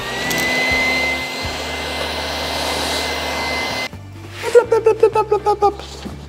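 Electric hot-air blower (heat gun) running: a steady rush of air with a motor whine that rises and settles into a steady high tone, then stops abruptly about four seconds in. It is heating the plywood so it can be bent over the curved former.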